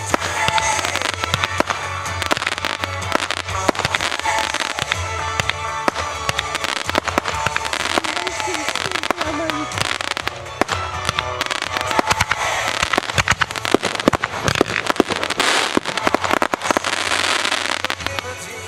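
Aerial fireworks going off in quick succession: dense crackling and popping with sharper reports, heaviest in the second half.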